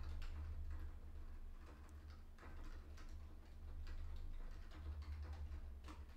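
Faint, scattered light clicks over a steady low hum.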